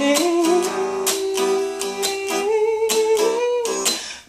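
A woman holds one long sung note, stepping up in pitch about two and a half seconds in, over a strummed guitar.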